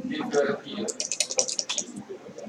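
A quick run of about a dozen small, sharp clicks lasting about a second, after a brief word of speech at the start.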